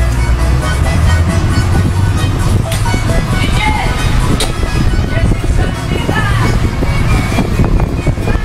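Music playing over the steady low rumble of an open-sided tour truck driving along a road.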